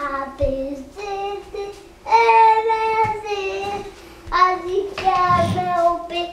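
A young child singing a nursery song unaccompanied, in short phrases of long held notes with brief pauses between them.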